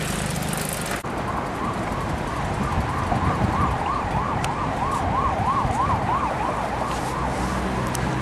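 A siren sounding in a fast up-and-down wail, about three sweeps a second, growing louder through the middle and fading near the end. The sound cuts abruptly about a second in before the siren starts.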